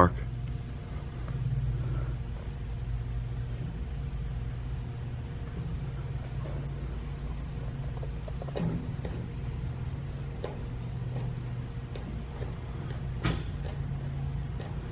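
A low, steady hum and rumble with a few faint clicks and knocks, as a wooden dowel is pressed and held inside a jet pump against the intake housing.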